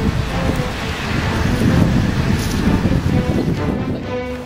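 Wind buffeting the camera microphone in an uneven low rumble, with background music faintly underneath.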